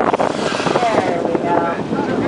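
Wind buffeting the microphone over the steady noise of a boat on open water, with a brief louder rush about half a second in. Short bits of people's voices come through near the middle.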